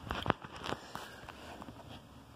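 Handling noise from the phone camera being moved: a few light clicks and knocks in the first second, then faint background noise.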